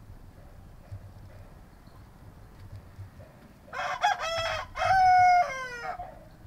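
A rooster crowing once, about two seconds long, beginning a little past the middle. Its last note is held and then falls away.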